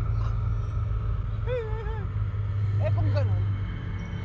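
Two short, high-pitched wordless vocal sounds from a person, about a second and a half in and again around three seconds, over a steady low hum.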